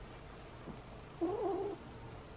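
A nine-week-old tabby kitten mews once, a short wavering call a little over a second in.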